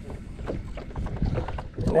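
Low rumble of wind on the microphone over open water, with a few faint clicks and handling noises from a spinning rod and reel just after a cast.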